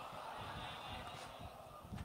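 Faint murmur of many voices from a gathered audience, low and even, with no single clear speaker.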